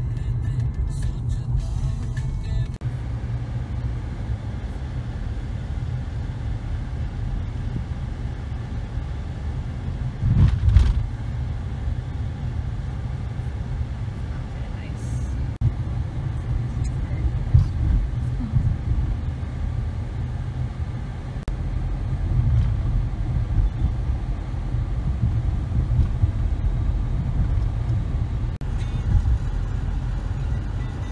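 Car cabin noise while driving: the steady low rumble of engine and tyres on the road, heard from inside the car, with a brief louder thump about ten seconds in.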